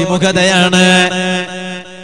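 A man's voice intoning in a chanting style, holding one long drawn-out note that fades near the end.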